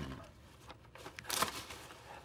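Faint handling noises: light rustling and a few small clicks, with one sharper click about a second and a half in.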